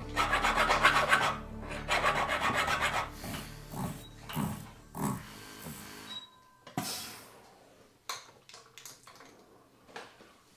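A hand file rasps against the inside of a mokume gane (layered-metal) ring in rapid strokes: two quick runs in the first three seconds, then lighter, sparser strokes. A brief thin whine comes about six seconds in, and scattered small clicks follow near the end.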